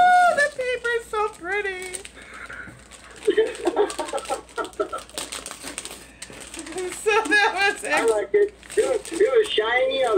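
A woman's voice in repeated wordless exclamations and drawn-out vocal sounds, with faint rustling of wrapping paper as a gift is unwrapped.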